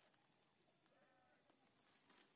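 Near silence, with a few faint animal calls.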